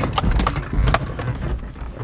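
Inside a Ford Escape driving over rough ground: a steady low rumble with a few hard knocks and low thumps, about half a second apart, from the body and suspension taking bumps.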